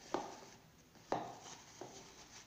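A plastic food container knocking against a wooden board as a paper towel is pressed down into it: three sharp knocks, the last one lighter.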